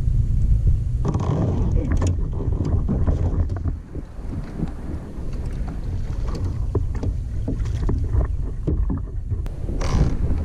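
Wind buffeting the microphone with a rough low rumble, over scattered clicks and knocks from rod, reel and kayak handling as an angler standing in a kayak reels in a small largemouth bass. A sharper burst comes just before the end as the fish is swung out of the water.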